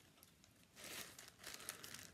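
Faint crinkling of small plastic zip bags of embroidery floss being handled on a ring, in two short spells in the second half.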